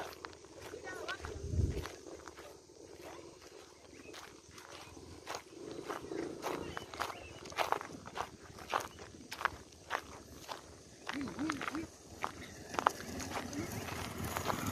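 Footsteps on loose river gravel and pebbles, an uneven run of short crunching steps at about two a second.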